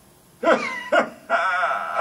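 A mobile phone sounding its ringtone or alert: three short pitched calls, the last one longer and wavering.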